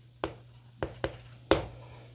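Chalk writing on a blackboard: faint scratching strokes, with three sharp taps of the chalk against the board spread across the two seconds.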